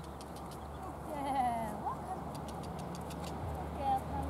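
A pony's hooves trotting on a sand arena, with a brief wavering animal call, like a bleat, about a second in and a short call near the end.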